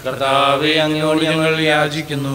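A single voice chanting a liturgical prayer on a nearly level pitch, intoned rather than spoken, in a Malayalam-rite Mass.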